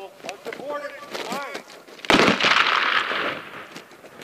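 A loud gravel crunch and rattle of gear about two seconds in, fading over about a second, as a soldier carrying an M4 carbine drops onto gravel into the prone firing position. A man's voice is heard briefly before it.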